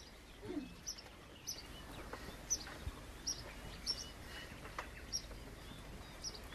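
A bird chirping faintly: a run of short high chirps, roughly one every second, over quiet outdoor background noise.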